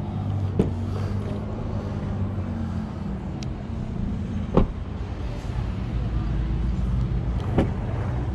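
A vehicle engine idling steadily, with a few sharp clicks from car door handles and latches as the doors of a Cadillac Escalade are opened; the loudest click comes about four and a half seconds in.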